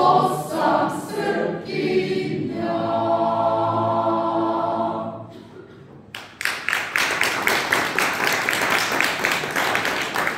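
Mixed choir singing a cappella, closing on a long held chord that dies away about five seconds in. About a second later the audience starts applauding and keeps clapping steadily.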